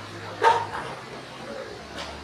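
A dog barking once, sharply, about half a second in. A steady low hum runs underneath.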